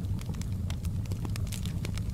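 Wood fire burning in a fireplace: frequent irregular crackles and pops from the logs over a steady low rumble of the flames.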